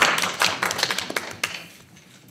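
Brief applause from a small group of people around a conference table: dense, irregular hand claps that thin out and die away toward the end.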